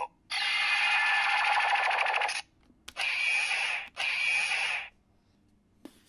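CSM Dragvisor gauntlet toy playing electronic sound effects through its small built-in speaker while its green light glows: one loud noisy burst of about two seconds, then two shorter bursts of about a second each.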